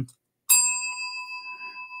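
A single bell-like chime struck about half a second in, ringing on as a few steady tones that fade slowly.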